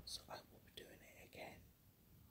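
Faint whispering: a few soft, breathy syllables in the first second and a half.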